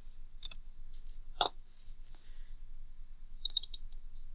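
A few separate computer mouse clicks. There is one about half a second in and a sharper one at about a second and a half, then a quick cluster of clicks near the end.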